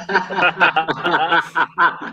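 Men laughing in a run of quick, choppy bursts.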